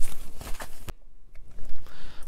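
Fabric rustling and rubbing of a Beurer BM 49 upper-arm blood pressure cuff as it is wrapped around the arm, with one sharp click just before a second in.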